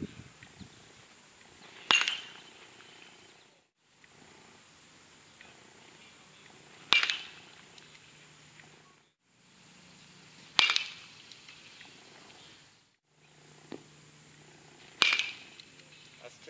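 Baseball bat striking pitched balls during batting practice: four sharp cracks, each with a brief ring, about three to five seconds apart.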